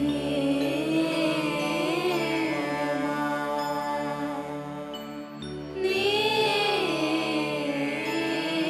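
Devotional song music: a slow, chant-like sung melody with wavering, gliding pitch over a steady drone. The melody drops away briefly about five seconds in, then comes back louder.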